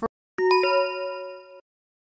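A bell-like ding chime, struck twice in quick succession about half a second in, ringing with a few clear tones and fading out within about a second.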